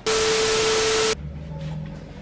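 A burst of loud static hiss with one steady tone running through it, lasting about a second and cutting off suddenly: an edited-in static sound effect at a cut. A faint room sound follows.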